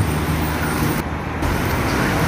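Steady road traffic noise from cars passing on the road beside the bridge.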